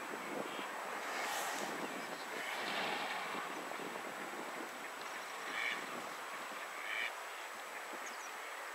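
Ducks calling: two short calls near the end, over steady background noise.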